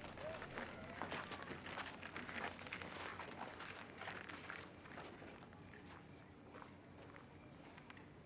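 Footsteps of several people shuffling and walking on a straw-covered floor, with rustling. They are busiest in the first few seconds and thin out toward the end.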